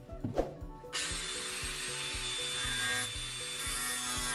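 Angle grinder cutting into a plastic canister: a steady high whine with a dense hiss that starts suddenly about a second in and keeps on. Just before it, a couple of light knocks as the canister is handled on the wooden bench.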